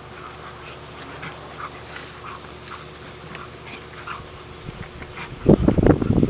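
Rhodesian Ridgebacks playing rough, with short faint whimpers and yips scattered through. Near the end comes a sudden loud burst of rustling and knocking close to the microphone.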